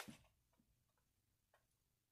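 Near silence: quiet room tone with two faint ticks, about half a second and a second and a half in.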